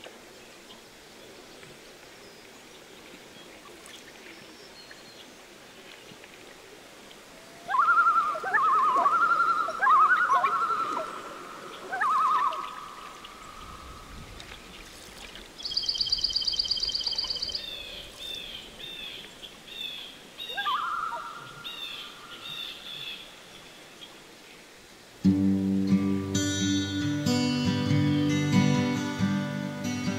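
Common loon giving loud wavering calls about eight seconds in, with another short call around twenty-one seconds in. Between them come a fast high-pitched pulsed call and a run of short chirps. Acoustic guitar music comes in about twenty-five seconds in.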